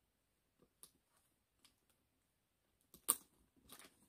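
Faint clicks and light rustling of a leather handbag being handled as the shoulder strap's clasp is fastened onto it, with one sharper click about three seconds in.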